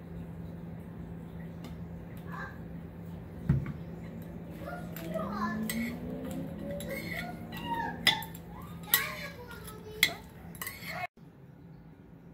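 A metal spoon tossing salad in a large ceramic bowl, clinking sharply against the bowl three times in the second half, after a single thump a few seconds in. A steady low hum runs underneath.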